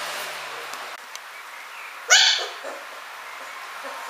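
Samoyed puppy giving one sharp, high-pitched yip with a falling pitch about two seconds in, followed by a couple of fainter short yips: play-barking while wrestling with its littermate.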